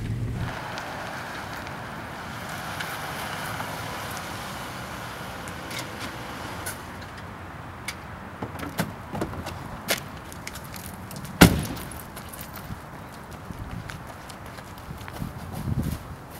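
Car doors being worked: a few light clicks and knocks, then one door slammed shut about eleven seconds in, the loudest sound. A steady hiss of outdoor street noise lies under the first half.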